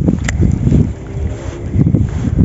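Low rumble of wind and handling on the microphone as a light spinning rod is cast, with one sharp click about a third of a second in.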